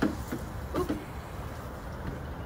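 A light knock right at the start, then a brief exclaimed "oh" from a person, over a steady low outdoor rumble.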